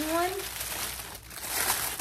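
Clear plastic packaging bag crinkling as it is handled, quieter about a second in and louder again near the end.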